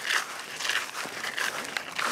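Footsteps swishing through long grass: a series of soft, irregular rustles, several a second.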